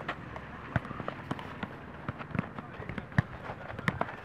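Footballs being kicked: a string of sharp thuds at irregular intervals, the loudest a little past three seconds in.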